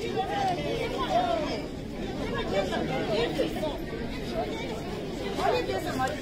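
Crowd chatter: many voices talking over one another at once, with no single speaker standing out.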